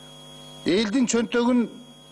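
A man's voice, picked up by a desk microphone, speaks a short phrase of about a second in the middle, over a steady electrical mains hum that runs under everything.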